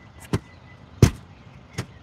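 Cardboard record album jackets knocking against each other as they are flipped through in a box: a few sharp taps, the loudest about halfway through.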